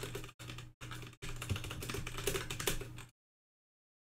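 Typing on a computer keyboard, quick clicking keystrokes over a low steady hum, coming in short stretches with brief gaps and cutting off abruptly about three seconds in.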